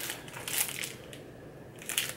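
Small clear plastic packet of sticker labels crinkling as it is handled and lifted out of a wooden box. There are a few short crackles about half a second in, a quieter stretch, and another rustle near the end.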